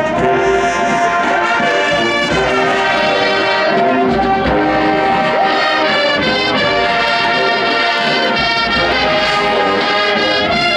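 Marching band playing full, sustained chords from the brass, sousaphones and saxophones, at a steady loudness, the chords changing every second or two.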